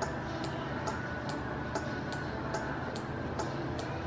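Small 12 V DC relay clicking steadily, a little over twice a second, as a square-wave oscillator circuit switches it on and off, over a steady background hum.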